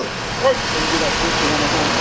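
Road traffic passing close by: a steady rush of car noise, with faint voices underneath.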